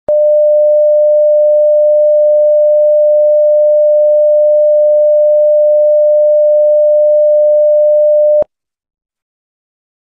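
Loud, steady electronic test tone, one unwavering note, as played over a TV colour-bar test pattern. It starts abruptly just after the start and cuts off suddenly about eight and a half seconds in.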